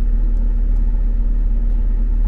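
Mercedes-Benz G400d's inline-six diesel idling, heard from inside the cabin as a steady low rumble.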